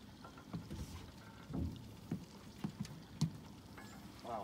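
A few soft knocks and bumps on a small fishing boat, spaced irregularly, over a quiet background.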